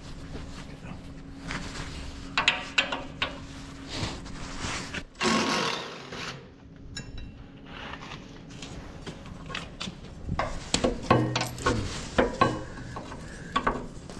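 Cordless impact driver running in short bursts, loosening the belt-adjuster bolts on a feed mixer's conveyor, the loudest burst about five seconds in, with clicks and knocks of metal tools between them. A faint steady hum lies underneath for most of it.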